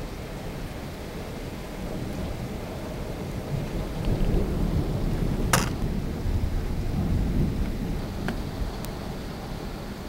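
Severe thunderstorm heard through a window: rain and gusting wind, with a deep rumble that builds about two seconds in, is loudest in the middle and eases off near the end. One sharp click sounds about halfway through.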